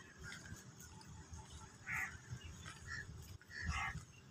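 Three short animal calls in the second half, the last being the loudest, over a low rumble.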